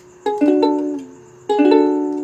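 Ukulele strummed twice on a D major chord. The strings sound one just after another in each strum, then ring out and fade.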